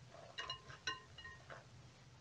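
A few faint clinks against a glass bowl of ice water as hands and a thermometer move in it: short, light strikes with a brief ringing, spaced about half a second apart.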